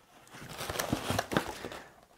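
Rustling and crinkling of paper packaging and fabric as a T-shirt and notebooks are pulled out of a cardboard box, with a few light knocks in the middle.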